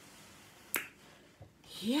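A single sharp click about three quarters of a second in.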